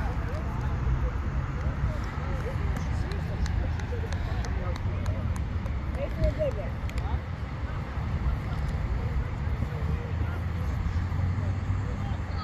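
Scattered distant voices of players and spectators talking on an open field, over a steady low rumble.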